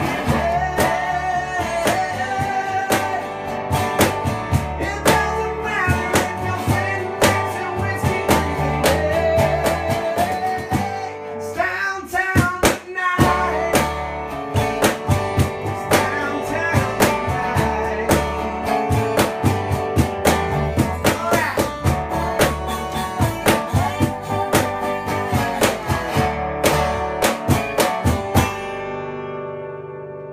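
Acoustic band playing a song: a resonator guitar strummed over a plucked upright bass, with a man singing. Near the end the playing stops and the last chord rings out and fades.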